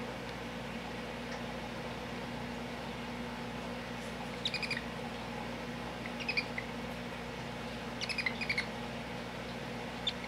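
Baby African pygmy hedgehog, its eyes just opened, giving quick strings of high squeaks that sound like a little chipmunk or squirrel. They come in three short bursts: about halfway in, a couple of seconds later, and a longer run near the end.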